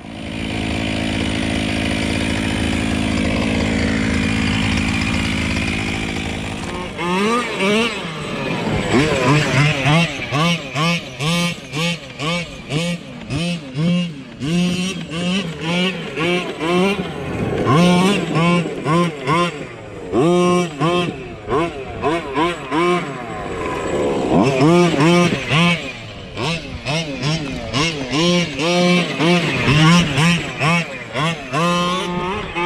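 Losi MTXL 1/5-scale monster truck's two-stroke petrol engine running. It drones steadily at first, then from about seven seconds in it is revved up and down in short bursts of throttle, pitch rising and falling each time.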